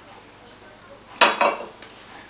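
China teacup and saucer clinking together: three sharp, ringing clinks a little over a second in.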